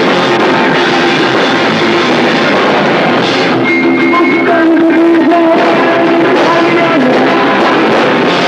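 Emo rock band playing live: electric guitars, bass and drum kit with a sung vocal, loud and dense as picked up by a VHS camcorder's microphone in a small hall.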